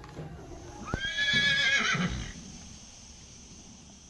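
A horse whinnying once, about a second in: the call sweeps sharply up, holds for about a second, then wavers and breaks up.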